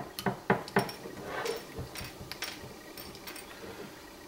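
Quick metallic clicks and clinks from a hinged metal jig-head mold being worked open and hooked jig heads being popped out of it onto a countertop. A rapid run of sharp clicks comes in the first second, then fainter, scattered taps.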